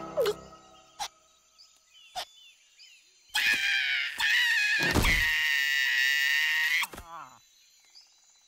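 A cartoon character's long, high-pitched wail lasting about three and a half seconds, wavering at first and then held on one pitch, cut off by a thud as the character collapses. A few faint clicks come before it.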